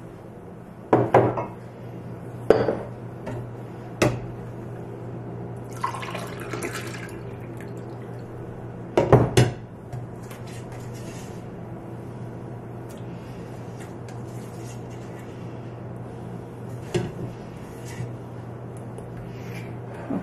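A glass measuring cup clinking and knocking against a stainless steel stockpot while cabbage juice is scooped out, with some liquid sounds. The knocks are scattered, with the loudest cluster about nine seconds in.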